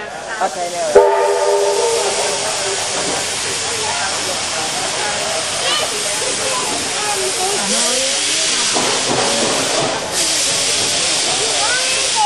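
Steam locomotive whistle giving a short blast about a second in, followed by a steady loud hiss of escaping steam from the locomotive.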